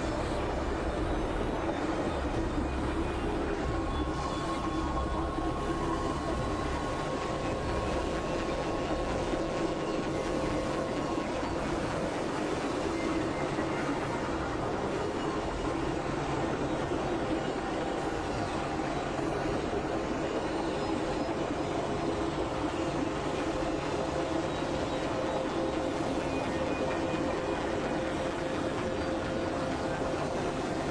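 Experimental synthesizer noise-drone music: a dense, steady rushing texture. A held higher tone sits over it from about four to eleven seconds in, and a low rumble underneath fades out by about seven seconds in.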